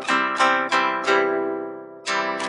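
Instrumental accompaniment to a carol between verses: a string instrument plays four quick notes or chords in the first second, then the last one rings and dies away.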